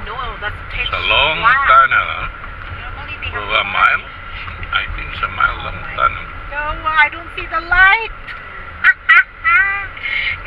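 People talking inside a car cabin over the steady low rumble of the car driving through a road tunnel.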